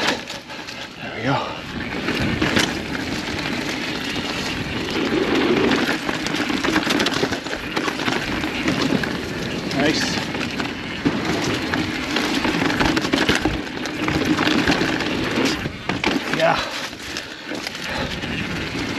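Orbea Occam mountain bike descending a rocky, leaf-strewn singletrack: a steady rush of tyre roll with frequent knocks and rattles as the wheels and chain hit rock.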